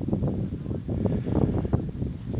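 Wind buffeting the microphone in uneven gusts, a rough rumble with no voice over it.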